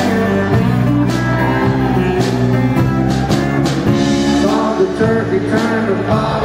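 Live country band playing an instrumental passage: guitars, electric bass and drum kit, with steady drum beats.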